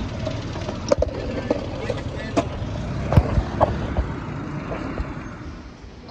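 A Volkswagen Beetle's engine running close by, a steady low rumble that fades over the last second or two. Several sharp knocks from the phone being handled sit over it.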